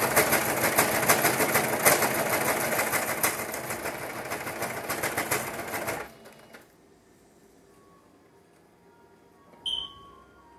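Singer electronic sewing machine stitching fast, the needle going in a rapid even rattle that eases off and stops about six seconds in. After that it is quiet except for a short high-pitched tone near the end.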